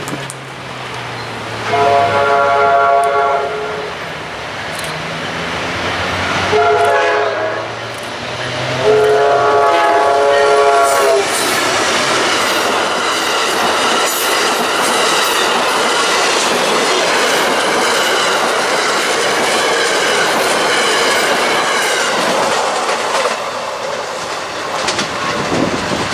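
Amtrak passenger train led by a GE P42DC diesel locomotive blowing its horn for a grade crossing: three chords, long, short, long. From about 11 seconds in, the stainless-steel passenger cars roll past close by with a steady wash of wheel and rail noise that eases off near the end.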